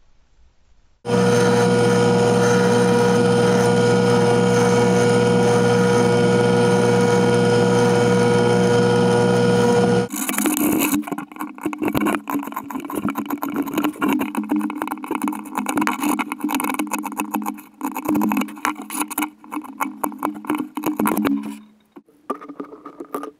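Power tools working wood. One runs loud and steady for about nine seconds. Then the sound turns to an uneven, scratchy cutting with a lower hum that varies with the load, and it stops just before the end.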